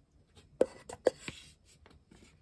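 Two sharp knocks about half a second apart, with a few lighter clicks and a little rustling, as hard objects are handled.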